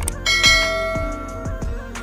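A bell-like notification chime that rings once and fades over about a second and a half, over background music with a steady beat.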